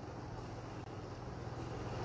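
Steady low background noise with a faint, even hum and no distinct events: room tone.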